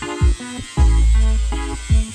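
Electronic background music with a heavy bass line and a steady beat.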